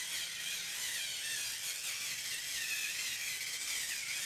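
Small battery-powered 5-in-1 facial cleansing brush running with its round massage head pressed against the cheek: a steady, even motor whir with a hiss from the head rubbing over the skin. The motor is weak and has little power, by the owner's account.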